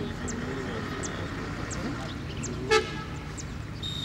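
Open-air football match: distant players and spectators talking and calling, with one short horn-like toot about two-thirds of the way through. A steady high-pitched referee's whistle starts just before the end.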